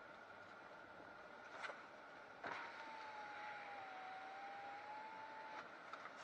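Faint vehicle cabin noise with a click, then the whine of an electric window motor for about three seconds, dipping slightly in pitch and stopping suddenly as the side window goes down.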